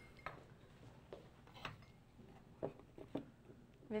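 Faint, scattered light knocks and taps of dishes being handled on a countertop as a glass baking dish is picked up.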